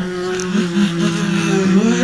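Lo-fi experimental noise recording: a steady low drone of two held tones with overtones, wavering and bending in pitch near the end, over a light hiss.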